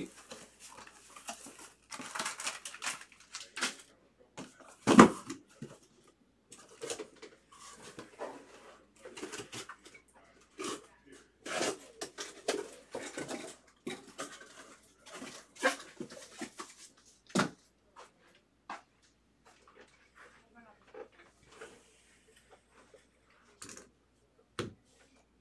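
A cardboard shipping case being handled and opened and shrink-wrapped card boxes set out on a table: irregular rustles, scrapes and light taps, with a sharp knock about five seconds in and another about seventeen seconds in.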